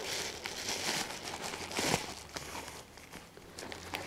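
Crinkling and rustling of a padded kraft-paper mailer as it is handled and turned over. The sound is busier in the first half, with a sharper crackle about two seconds in, then settles.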